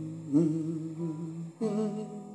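A man humming a slow, wavering melody over an acoustic guitar, with fresh guitar notes plucked about a third of a second in and again near the end.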